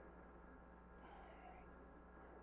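Near silence: room tone with a steady low electrical hum.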